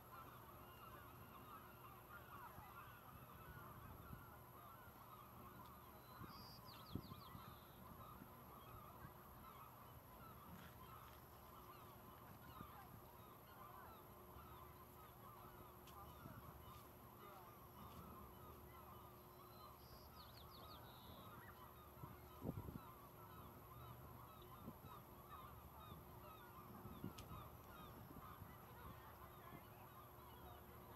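Faint, steady chatter of a distant flock of birds calling, with two brief higher bird calls and a couple of soft thumps, the louder one about two-thirds of the way through.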